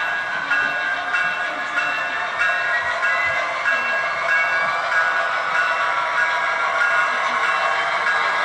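Model locomotive sound decoder on an HO-scale Athearn Genesis diesel, playing the diesel engine running at low speed step with the bell ringing steadily over it, through the model's small speaker.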